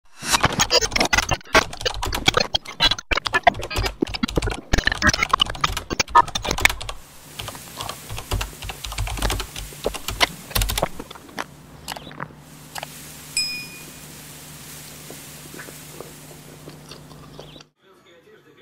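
Close-miked ASMR eating and food-handling sounds: a dense run of loud, crackling, sticky clicks for about the first seven seconds, then softer clicks and low thumps. These give way to a low steady hum with one short high ping, and the sound cuts off just before the end.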